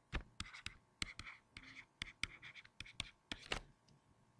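A pen stylus tapping and scratching on a tablet as words are handwritten: a quick, faint string of clicks and short scrapes.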